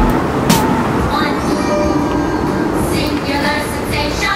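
Steady, loud rumbling noise with faint music and voices mixed into it.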